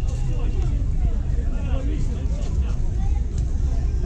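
People's voices talking over one another, over a steady low rumble.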